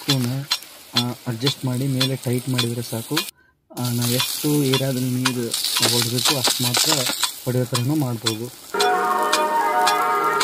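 Rain gun sprinkler running: a hissing water spray with many sharp clicks, over a low pitched sound that wavers and keeps breaking off. The sound cuts out completely for a moment a few seconds in, and music with steady notes comes in near the end.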